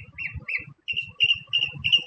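A bird calling a rapid series of short, even chirps, about three or four a second, with a brief pause partway through. Gusts of wind buffet the microphone underneath.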